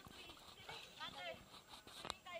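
Faint, high-pitched voices of people in a swimming pool, with light water splashing.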